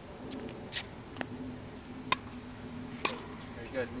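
Tennis balls struck by rackets during a volley drill: a few sharp pops spaced about a second apart, the loudest about halfway through, over a faint steady hum.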